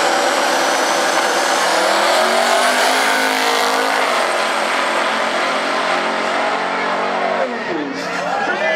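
First-generation Chevrolet Camaro drag car making a full-throttle quarter-mile-style pass, its engine pitch climbing hard from the launch and held at high revs down the strip. Near the end the engine note drops sharply as the driver lifts off after the finish.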